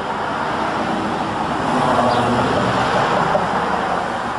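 Cars driving past on the street, their tyre and engine noise building to a peak about halfway through.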